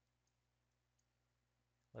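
Near silence with a couple of faint computer mouse clicks.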